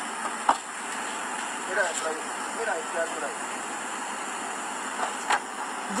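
Steady background noise from an outdoor night recording, with faint distant voices about two to three seconds in. Two short clicks come about half a second in and near the end.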